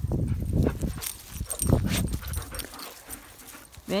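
A dog growling low in two bursts in the first two seconds, the kind of noise a dog makes in play.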